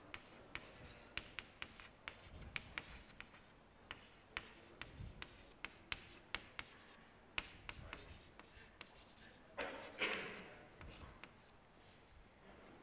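Chalk writing on a blackboard: a string of sharp taps and short scratches as letters and numbers are written, with one longer, louder scrape about ten seconds in.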